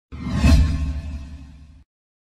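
Whoosh sound effect with a deep rumble underneath, swelling to its loudest about half a second in, then fading and cutting off just before the logo appears.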